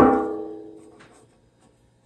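A single knock on a metal cookie tin, which rings with a clear, bell-like tone that dies away over about a second.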